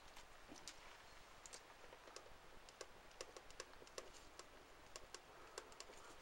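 Faint ticks and light scratches of a ballpoint pen writing a name by hand on a sheet of paper, in short irregular strokes.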